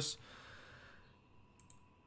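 A short pause in a man's speech into a microphone: a faint breath out during the first second, then a couple of small, soft clicks a little past halfway, over low room hum.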